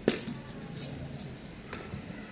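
Cricket bat striking the ball on a sweep shot, one sharp knock with a short echo off the bare concrete walls; a fainter knock comes near the end.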